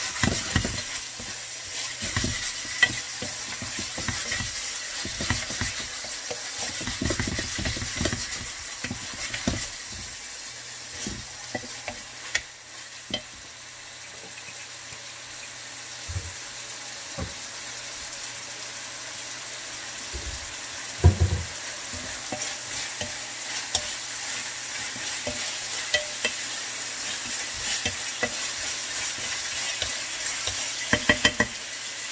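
Beef strips sizzling in a frying pan as a wooden spatula stirs and scrapes them, with short knocks of the spatula against the pan. The stirring is busiest in the first ten seconds, and the loudest knock comes about 21 seconds in.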